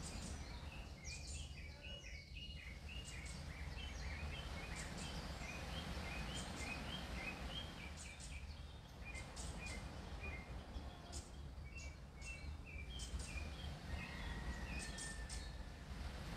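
Birds chirping in short, repeated notes over a steady low hum.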